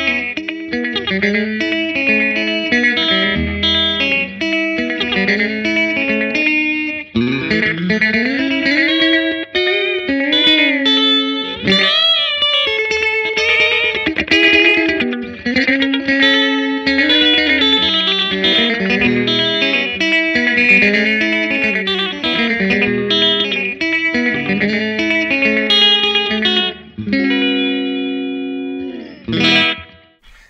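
Electric guitar solo on a Telecaster through a Line 6 Spider IV 75 amp set to its Twang model, with slapback echo and a little reverb: a twangy rockabilly sound. Quick runs of single notes with string bends, ending on a held chord that cuts off just before the end.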